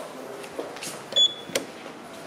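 Fujitec elevator arrival chime: a single short, high electronic beep a little after a second in, followed by a sharp click as the car arrives and the doors open.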